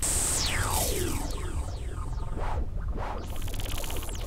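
Synthesized cartoon magic sound effect: whistle-like sweeps falling from high to low pitch, the longest in the first second, over a steady low electronic backing.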